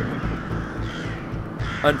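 A flock of crows cawing, a harsh scratchy background without any clear single call standing out.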